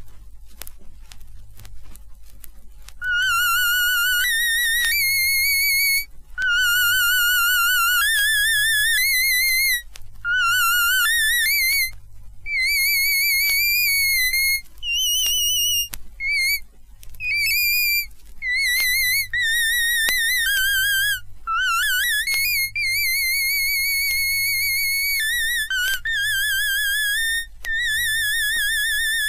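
A high, squeaky instrument tune with a heavy wobble on every note, played in stop-start phrases that jump up and down in pitch. It is an unskilled performance that "doesn't sound quite right yet". Record crackle comes first, and a low hum runs under everything.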